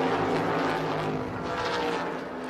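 A pack of NASCAR Cup Series stock cars running flat out, their V8 engines making a steady drone of several overlapping tones.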